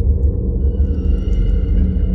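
São Paulo Metro train running: a heavy low rumble, with several steady high whining tones coming in about half a second in.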